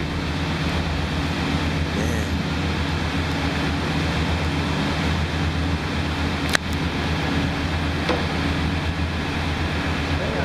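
Steady low machinery hum from the gold-melting furnace and foundry equipment while molten gold pours into a row of ingot moulds, with a faint steady high whine over it. A single sharp click about six and a half seconds in.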